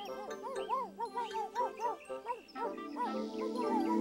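Light children's-show music with a small dog barking repeatedly over it, several short yaps a second. About three seconds in, a hiss of wind rises under it.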